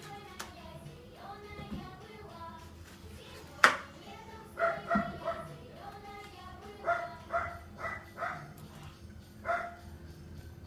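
A song playing quietly in the background, a children's song about frost, with short high sung notes coming every second or so. One sharp knock stands out about a third of the way in.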